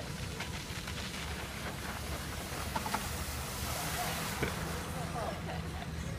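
Steady outdoor rumble and hiss with faint distant voices now and then, and a couple of small clicks in the middle.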